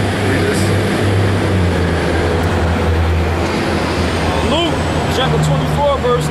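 Street traffic at an intersection: a steady low engine rumble from vehicles, with broad road noise.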